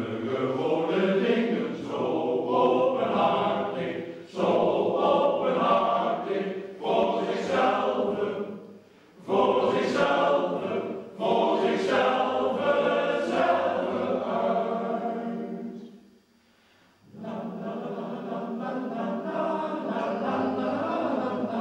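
Male choir singing in phrases with brief breaks between them. It falls silent for about a second near sixteen seconds in, then resumes more quietly.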